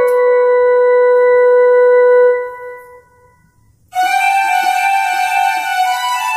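Casio CT-X9000IN keyboard playing a Sambalpuri folk tune: one long held note that fades away about two and a half seconds in, a short pause, then a brighter melody line starting about four seconds in.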